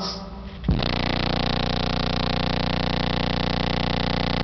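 A 30 Hz bass test tone played through a car-audio subwoofer system driven by a Hifonics Brutus amplifier, heard from inside the car. It starts abruptly a little under a second in and holds as a steady, loud, buzzing tone.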